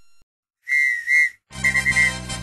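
Two loud blasts on a sports whistle, each about a third of a second long. About a second and a half in, upbeat music starts, with four quick whistle toots at the same pitch over it.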